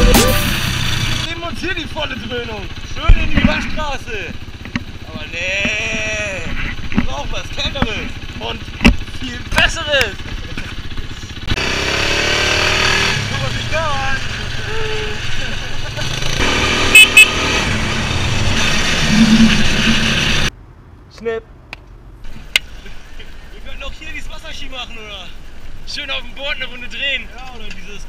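Quad bike running along a road with wind rushing over the microphone and indistinct voices from the riders. About two-thirds of the way in, the engine and wind noise cut off suddenly, leaving a much quieter stretch with faint voices.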